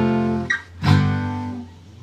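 Acoustic guitar strumming chords: the F chord that leads into the chorus rings from the start and fades, then a second chord is strummed just under a second in and dies away.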